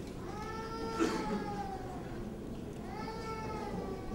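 A cat meowing twice, faintly: two long calls that each rise and then fall in pitch, the first lasting about two seconds, the second starting about three seconds in.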